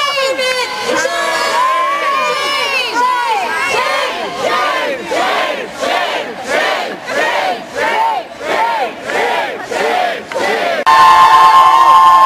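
Protest crowd chanting in unison, a call-and-response led over a microphone, settling into a fast, even chant of about two shouts a second. Near the end a loud held tone cuts in.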